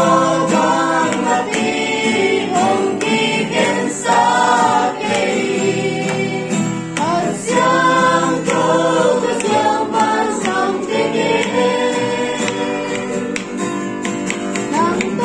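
A small group of men and women singing a worship song together in unison, accompanied by a strummed acoustic guitar.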